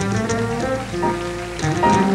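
Live jazz group playing: a drum kit with cymbals and toms over double bass and shifting melodic lines.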